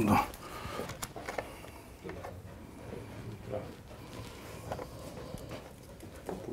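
Faint scattered clicks and rustles of hands working wires and test leads in an old car's engine bay. The starter does not crank: no current is reaching it.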